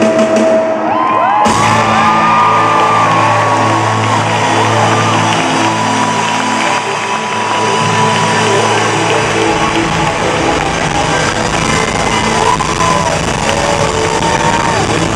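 Live rock band playing in an arena, with electric guitar and long bending held notes over a steady bass, and the crowd whooping and cheering over the music.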